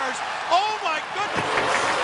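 Arena crowd cheering and applauding a goal at an ice hockey game, heard under a television announcer's voice.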